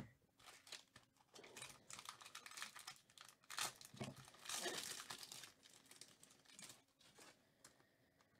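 Foil wrapper of a baseball card pack being torn open and crinkled by hand, in a run of crackling bursts that are loudest about halfway through.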